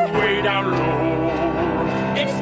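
Male voices singing a show-tune melody with piano accompaniment, a new sung phrase starting just as a long held note ends.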